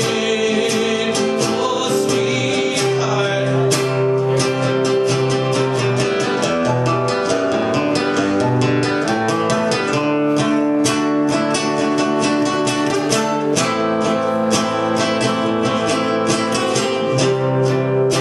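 Acoustic guitar played as an instrumental break: a quick, steady run of fingerpicked notes over held bass notes.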